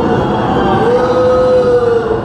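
A voice holding one long note that falls slightly near the end, sung or intoned as part of a musical cue.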